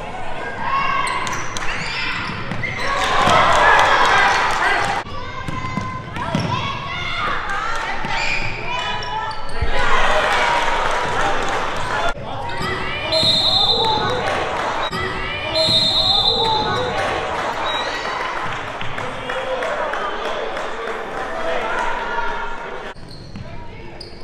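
Sound of a basketball game in an echoing gymnasium: the ball bouncing on the hardwood floor under a steady mix of spectators' and players' voices, with louder swells of shouting a few seconds in and again about ten seconds in. Two brief high squeaks stand out near the middle.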